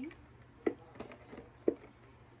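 Plastic body-mist bottles knocking together twice, about a second apart, as one is set down among the others.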